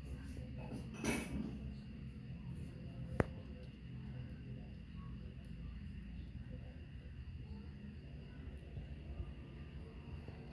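Small handling sounds as bench power-supply clip leads are fitted to a phone's battery contacts: a brief rustle about a second in and one sharp click about three seconds in, over a low steady hum.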